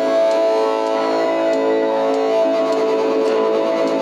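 Live band music: sustained synthesizer tones layered with electric guitar, held at a steady loudness.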